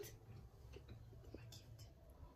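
Near silence with faint whispering.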